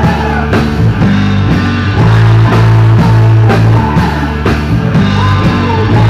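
Live rock band playing loud: electric guitar, bass guitar and drum kit with a steady beat, and a woman singing into a microphone over it.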